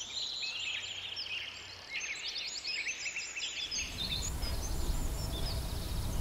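Birds chirping and singing, many short repeated calls overlapping, with a low rumble that joins about four seconds in and slowly grows louder.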